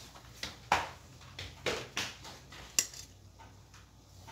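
A metal fork clinking and scraping against a ceramic dinner plate while eating, about six short sharp clinks in the first three seconds, the loudest about three-quarters of a second in and just before three seconds.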